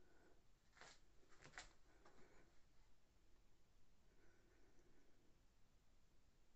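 Near silence: room tone with a few faint short clicks, about a second in and again half a second later.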